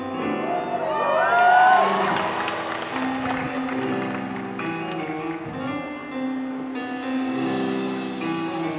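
Live band music: keyboard chords with bass, guitar and drums. Over the first two seconds, audience whistles and cheers rise above the playing.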